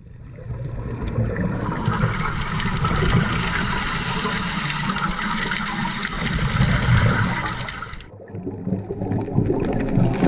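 A scuba diver's exhaled air bubbles through the regulator and rushes past the underwater camera in a long, steady stream. It drops away briefly about eight seconds in, then builds again.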